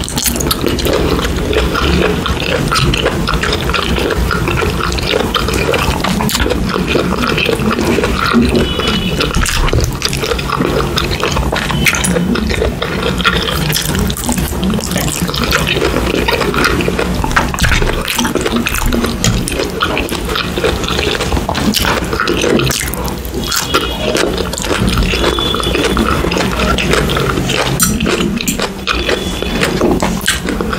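Close-miked chewing and mouth sounds of a person eating, a continuous loud run with many small clicks.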